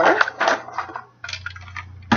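Handling noise from a plastic pet screen door being turned over in the hands: a run of short knocks and rustles of the plastic frame and flap, over a faint steady low hum.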